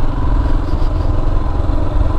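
Royal Enfield Himalayan's air-cooled 411 cc single-cylinder engine running at a steady pace while the bike is ridden.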